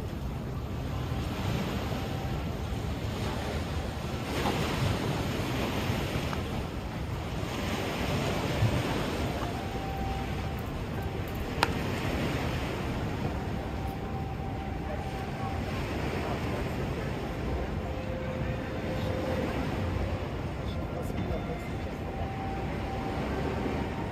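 Waterfront ambience: river water washing against the pier in recurring swells every couple of seconds, with wind on the microphone.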